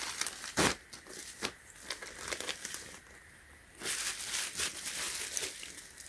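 Clear plastic poly bags crinkling as a folded cotton T-shirt is handled in and out of them: scattered short rustles at first, then a longer stretch of crinkling in the second half.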